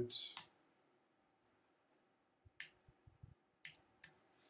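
A few sparse keystrokes on a computer keyboard: isolated sharp clicks, the clearest about two and a half and three and a half seconds in, with faint low knocks between them.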